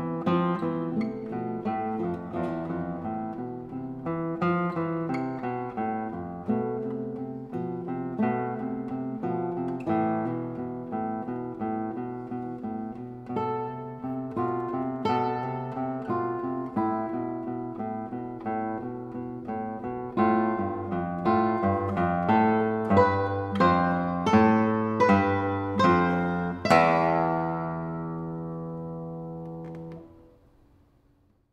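Two nylon-string classical guitars playing a duet of plucked melody and chords. In the last third the chords grow louder and more accented, ending on a final chord that rings out and fades away.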